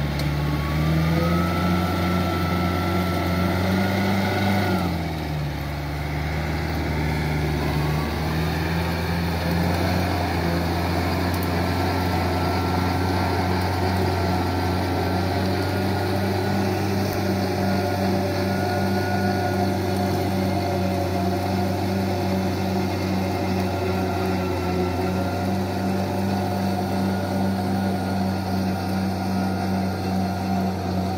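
Compact tractor's diesel engine running under load while driving a rotary tiller, with a high whine above the engine note. The engine note rises over the first few seconds, drops briefly about five seconds in, then runs steady.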